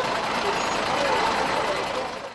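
Steady outdoor street noise at a burning building, with faint distant voices in it.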